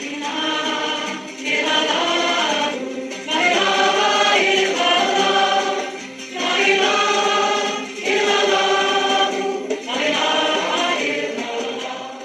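Choral singing: voices holding long notes in phrases of about one and a half to two seconds, with short breaths between them, tapering off near the end.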